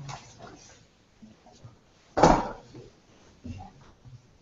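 A person's short, loud vocal outburst about two seconds in, with a few quieter voice sounds around it.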